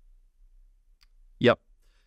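Near silence on a video-call line with a faint low hum, broken once by a short spoken "yep" about one and a half seconds in.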